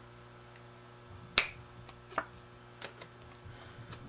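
A single sharp snap about a second and a half in, followed by a few softer clicks from a deck of playing cards being handled, as the King of hearts on top of the deck changes to the Two of clubs.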